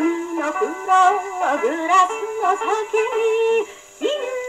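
A Japanese popular song from the early 1950s playing from a 78 rpm shellac record on a portable acoustic phonograph with a soft-tone steel needle. The sound is thin, with no deep bass and a steady surface hiss, and the melody wavers and glides. The music drops to a brief quiet gap just before the end.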